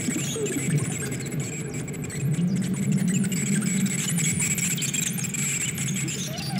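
Experimental electronic music for analog modular synthesizers and tape. A dense, noisy texture carries wavering, gliding tones and a steady high whistle, and a low drone thickens and swells about two seconds in.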